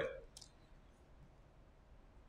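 A few faint computer keyboard keystrokes: one short, sharp click about half a second in and lighter ticks after it, then quiet room tone.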